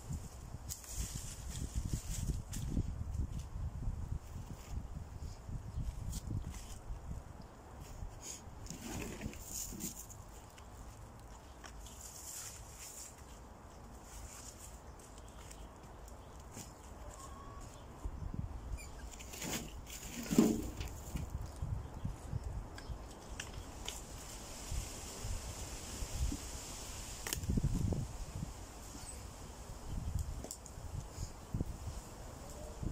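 Slabs of dry tree bark being handled and laid down on a bed of dry leaves: scattered scrapes, rustles and light knocks, with one louder knock about twenty seconds in. Wind gusts rumble on the microphone throughout.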